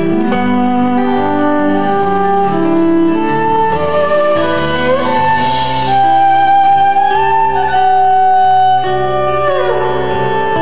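Fiddle playing a slow instrumental melody of long bowed notes, sliding up into notes around the middle and gliding down near the end, over acoustic guitar accompaniment from a live folk-rock band.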